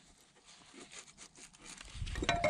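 Faint scrapes and a few light clicks of a steel adjustable wrench being fitted to the track tensioner's relief valve on a dozer's undercarriage, before the track tension is let off.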